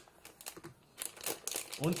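Silver foil blind-bag wrapper crinkling in the hands as it is opened and a small toy figure is pulled out: a run of short crackles starting about a second in.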